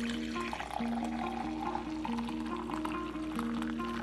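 Coffee pouring in a steady stream into a ceramic mug, fading out near the end, under background music.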